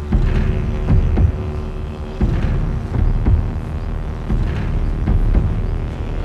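Tense, suspenseful film score: low drum hits struck every half second to second over a deep rumbling drone.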